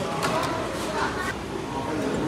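Indistinct background voices and general hubbub in a busy indoor dining hall, with faint snatches of speech but no clear words.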